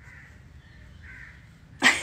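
Faint room noise, then near the end a woman suddenly bursts out laughing, in loud short bursts.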